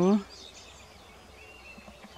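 A woman's word trailing off at the very start, then quiet outdoor background with a faint, brief bird chirp about a second and a half in.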